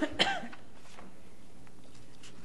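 A person coughing: a short cough right at the start, following another just before it, then steady room tone.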